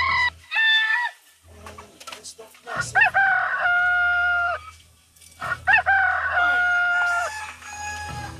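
A rooster crowing: a short call in the first second, then two long crows, each rising and then holding a steady note, starting about three and five and a half seconds in.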